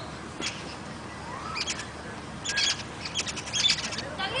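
Birds chirping: several short, high calls in bursts, thickest in the second half, over a steady outdoor background.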